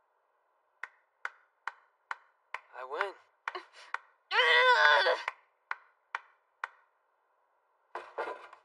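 Short, sharp knocks, evenly spaced at about two a second. A voice rises in the middle, briefly near three seconds and then in a longer, louder, wavering call for about a second.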